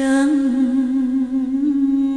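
A woman singing one long held note of a slow Vietnamese nhạc vàng ballad, with a slow vibrato. It opens with a short breathy hiss of a consonant.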